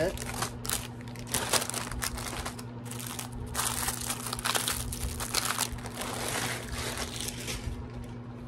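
A thin white plastic bag rustling and crinkling in irregular handfuls as things are stuffed into it, over a faint steady low hum.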